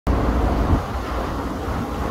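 Steady low rumble with a light hiss: general outdoor background noise on a commercial rooftop.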